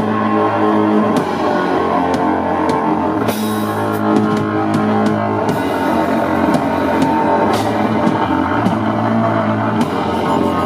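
Live rock band playing an instrumental passage: one-string guitar over a full drum kit, with a cymbal crash about three seconds in.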